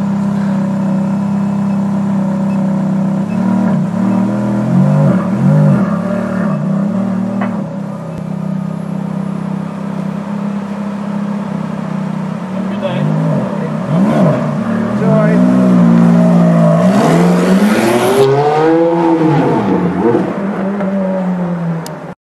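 Ferrari convertible's engine idling steadily, then blipped with a few short revs. In the second half it is revved harder and longer in repeated rising and falling sweeps, loudest near the end.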